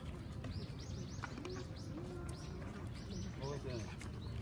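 A bird chirping over and over: short, high, arched chirps, about three a second.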